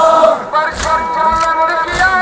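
A large crowd of Shia mourners chanting a lament in unison, singing long held notes with a short break between phrases. Regular dull thuds, roughly two a second, run under the chant, in keeping with rhythmic chest-beating (matam).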